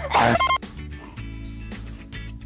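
A person's cough in the first half-second, then background music with steady low sustained notes.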